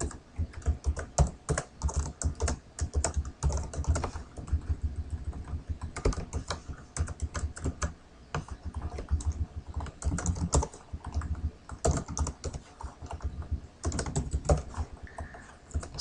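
Typing on a computer keyboard: irregular runs of keystroke clicks broken by short pauses.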